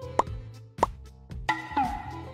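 Two short cartoon pop sound effects about two-thirds of a second apart over background music, then a longer sound effect starting about three-quarters of the way through.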